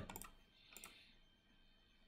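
Near silence with a few faint clicks, typical of a computer being clicked to advance a presentation slide.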